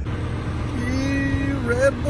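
A man's voice holding one long, drawn-out note for nearly a second, then lifting in pitch near the end, over a steady low rumble.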